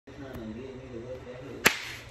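A faint, low wavering tone, then a single sharp crack about one and a half seconds in.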